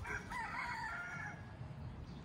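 A rooster crowing once, a single wavering call lasting a little over a second.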